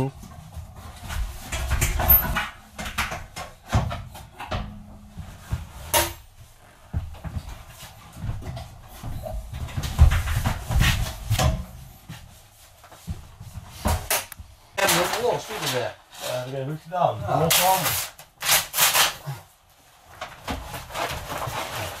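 Intermittent knocks, clicks and thuds of train seat cushions being taken off their metal seat frames and handled, with indistinct men's voices in the latter half.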